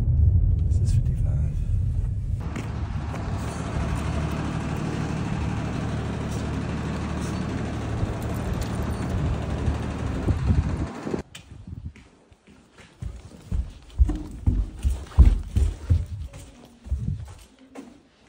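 A steady low rumble with a rushing noise, which stops abruptly about eleven seconds in. It gives way to irregular dull thumps of footsteps and phone handling as someone climbs carpeted stairs.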